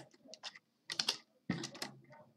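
Computer keyboard keys clicking: a handful of separate keystrokes with short gaps between them, as lines of code are copied and pasted.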